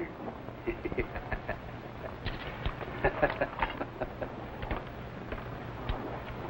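A man's chuckle right at the start, then irregular small clicks, knocks and clinks of jewellery and a small ornate box being handled in a treasure chest, over a steady low hum.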